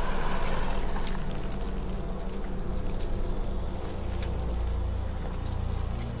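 Film soundtrack ambience: a steady low drone of sustained deep tones under a soft hiss that is strongest in the first second and then fades, with a few faint clicks.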